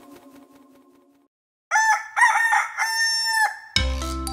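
The last notes of a chime fade away, then after a brief silence a rooster crows, a cock-a-doodle-doo ending in one long held note. Xylophone music starts just before the end.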